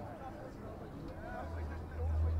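Faint distant voices of players calling out on an open field. A low steady hum comes in near the end.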